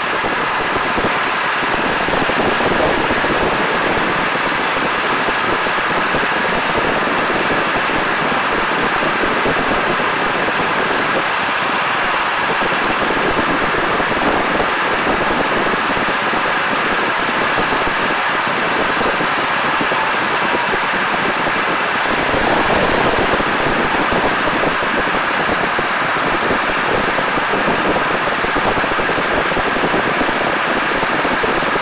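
Steady drone of a biplane's engine in flight, mixed with wind rushing over the wing-mounted camera, swelling slightly about two-thirds of the way through.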